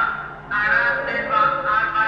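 Railway station public-address announcement in Romanian, a reverberant loudspeaker voice reading out a delayed intercity train's route, with a dip in level about half a second in.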